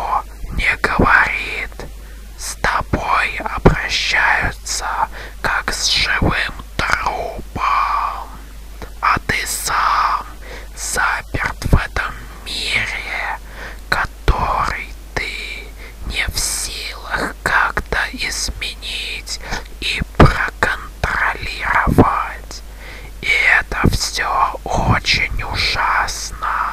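A voice whispering continuously in short phrases, with many sharp, hissing consonants.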